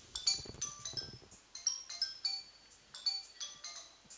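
Faint, irregular high-pitched clinks and pings, several each second, each with a brief ringing tone.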